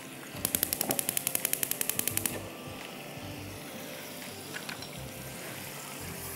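Gas cooktop's electric igniter clicking rapidly, about ten even clicks a second for about two seconds, then stopping as the burner lights under the pan.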